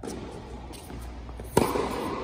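A tennis ball struck by a racket during a baseline rally, one sharp hit about one and a half seconds in, echoing in a large indoor tennis hall.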